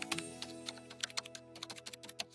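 Computer keyboard typing, a run of quick key clicks that come faster near the end, over soft background music with held notes.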